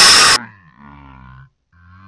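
A very loud burst of harsh noise that cuts off abruptly, followed by two deep, low groans with falling pitch.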